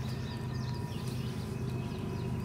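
Quiet background with a steady low hum and faint, scattered bird chirps.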